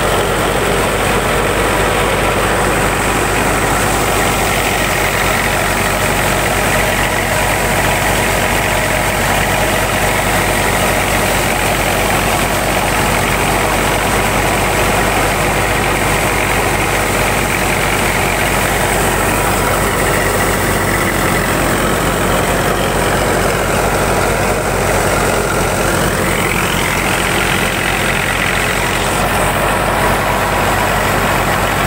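Tractor-driven Yunas wheat thresher running steadily and loudly under load as wheat is fed in, its threshing drum, belts and fan going together with the tractor engine that drives it.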